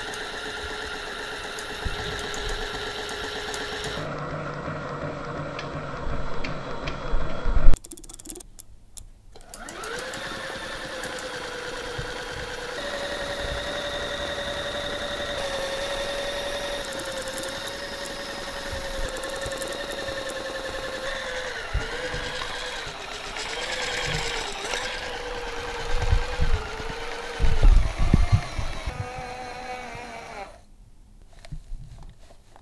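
A toy's small electric motor, overpowered on high voltage, running with a steady whine. It cuts out about eight seconds in and spins back up a second or so later, with a few knocks near the end.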